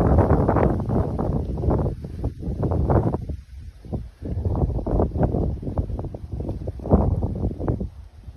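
Strong gusting wind buffeting the microphone with a low rumble, rising and falling in gusts, along with palm fronds thrashing: the storm winds ahead of a hurricane.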